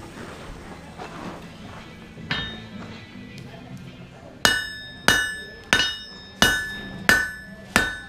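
Hand hammer striking a red-hot bar of high-carbon steel on an anvil: one light tap, then six hard blows about two-thirds of a second apart from about halfway in, each leaving a metallic ring. The blows are forging the indentation over the anvil's edge that separates a knife's handle from its blade.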